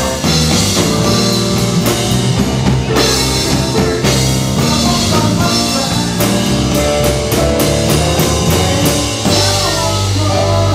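Live rock band playing a steady beat on drum kit, with keyboard and electric guitar.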